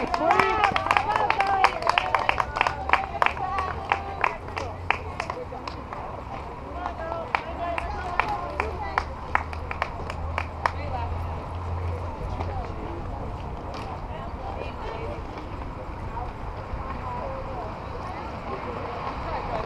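High voices shouting and cheering with rapid scattered hand claps from a softball team and its supporters, busiest in the first several seconds and thinning out after about twelve seconds.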